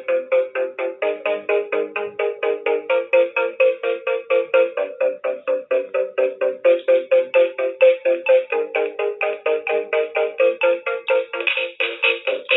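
Electronic house-style music loop made on the ButtonBass House Cube: a bright synth chord pulsing about four times a second, with the chord changing every second or two.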